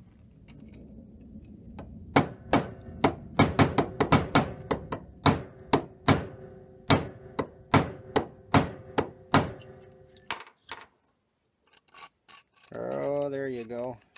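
Hammer blows on the steel hook of a stiff trampoline spring braced on a bench vise, bending the hook narrower so a carriage bolt can't slip out of it. A quick run of about twenty sharp metal-on-metal strikes, some leaving a brief ring, stops about three-quarters of the way through.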